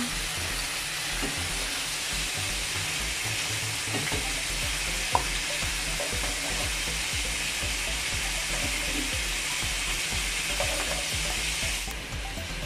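Beef strips frying in hot fat in a pan, a steady sizzle, with one short sharp click about five seconds in.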